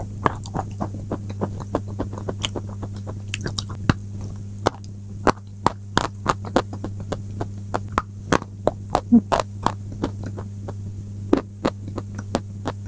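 Close-miked crunching and chewing of a white chalky block: many sharp, irregular crunches, a few each second, over a steady low electrical hum.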